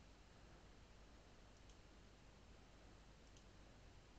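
Near silence with room hiss and two faint computer mouse clicks, one a little before halfway and one near the end.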